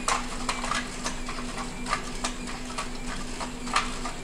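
NAO humanoid robot's feet tapping on the hard floor as it steps around in a turn, about two or three light taps a second, over a steady low hum.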